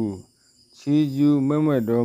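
Man's voice narrating in a slow, drawn-out, sing-song delivery, breaking off briefly about a quarter of a second in and resuming just before the one-second mark.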